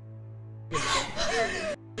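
A person crying: a wavering, sobbing wail lasting about a second, starting partway in, over soft sustained background music.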